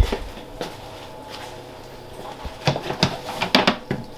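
A thump at the start, then scattered sharp clicks and knocks of a clear plastic storage tub being handled, bunched together about three seconds in as the lid is worked loose, over a faint steady hum.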